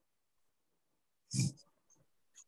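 Near silence, then one short burst of noise about a second and a half in, picked up by a video-call microphone.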